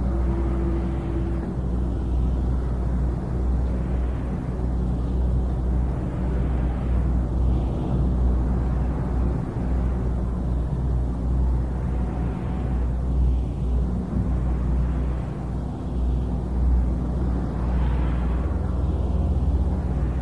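Steady low electrical hum and rumble under hiss, the background noise of an old tape recording of a lecture room with no one speaking.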